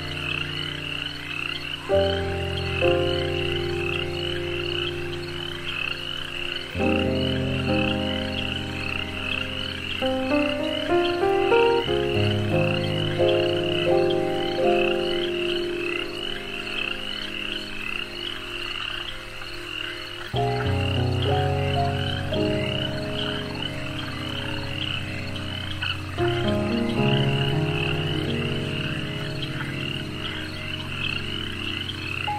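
Meditation track: a dense frog chorus of rapid, pulsing calls under slow, sustained chords that shift to a new chord every four to eight seconds.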